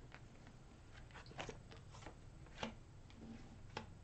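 Tarot cards being laid down one at a time on a cloth-covered table: a handful of faint, short taps and slides.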